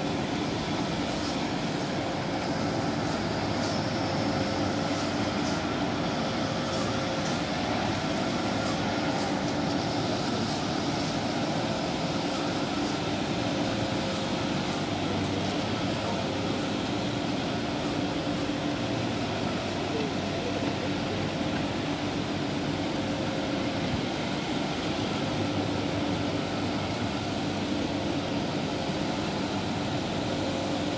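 Steady mechanical drone of running machinery, with two low hum notes held through it and no change in level.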